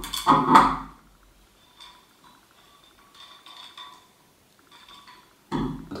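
Metal clatter as the lid of a 5-litre beer keg is fitted over a threaded rod onto the keg, loudest about half a second in, followed by faint metallic clinks.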